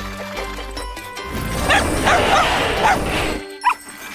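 A cartoon dog's voice yipping and whining several times from about midway, over background music.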